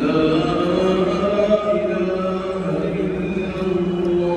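A single voice chanting in long held notes that slowly bend up and down in pitch.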